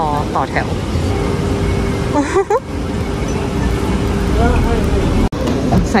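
Steady roadside traffic noise, cars running past on a wet road, with a brief voice about two seconds in.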